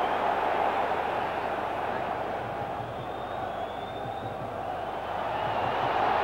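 Football stadium crowd noise: a steady wash of many spectators' voices, easing a little midway and swelling again near the end.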